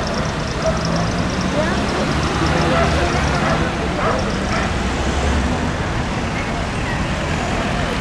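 City road traffic circling a roundabout: car and van engines and tyre noise passing close by, with a low engine hum swelling through the middle. Indistinct voices of people nearby are mixed in.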